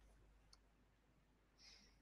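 Near silence: faint room tone with a low hum, a faint click about half a second in, and a short faint hiss near the end.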